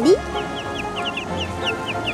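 Young chickens peeping: a steady run of short, high, falling chirps, several a second.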